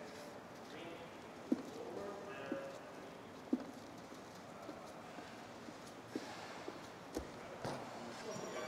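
Faint, regular knocks of a gymnast's hands landing on a pommel horse as he swings circles, about one a second at first and then about two a second, with faint voices behind.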